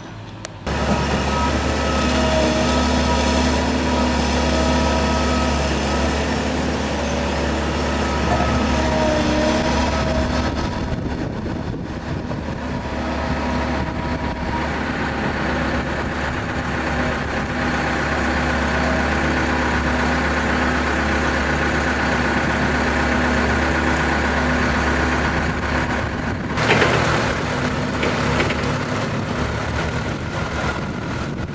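Heavy diesel plant engines running steadily at idle, a continuous low drone with steady tones over it. There is a brief louder surge near the end.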